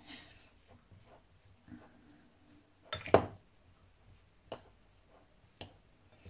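A fork stirring a soft, crumbly filling in a glass bowl: quiet scraping broken by a few sharp clinks of metal on glass, the loudest about three seconds in.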